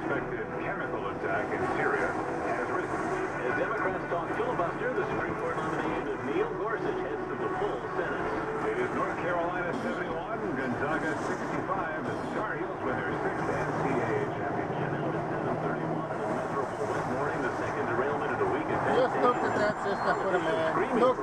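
A radio voice talking continuously, heard over the steady engine and road rumble inside a truck cab.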